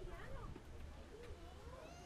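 Faint voices of people walking nearby, with pitch rising and falling, one of them high like a child's.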